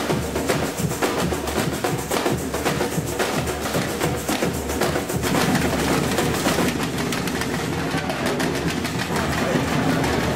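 Street percussion band playing drums in a fast, steady rhythm.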